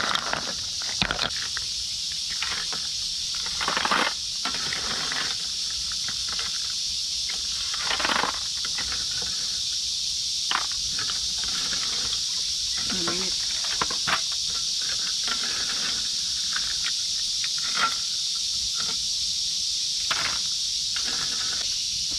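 A steady, high-pitched insect chorus, with scattered clinks and knocks from a metal ladle and cooking pot being handled.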